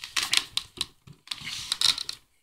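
Large cardboard box being turned in the hands: rustling scrapes and clicks of cardboard in two bursts of about a second each.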